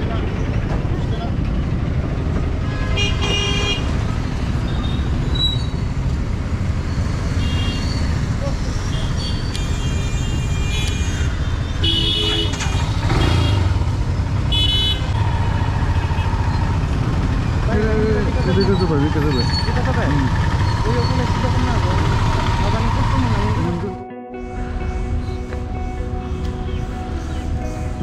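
Busy street traffic: vehicle horns honking several times over a steady low rumble of engines, with voices of people close by. Near the end the sound cuts abruptly to a steadier background with sustained tones.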